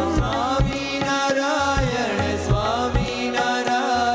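Devotional Indian song: a man's voice sings a wavering, gliding melody over a steady sustained drone and a regular low drum beat.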